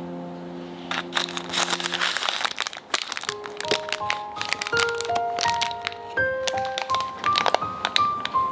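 Parchment baking paper crinkling as it is handled, starting about a second in, over background music: a held chord fades out, then a melody of short single notes plays.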